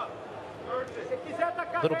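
Male commentator's voice over a low, even background haze, with a short gap in the talk at the start.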